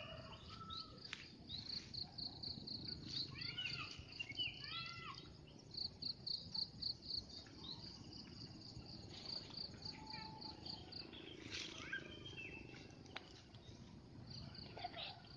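Wild birds chirping in short, arching notes, with a fast, even train of high pulses, about five a second, running through most of it.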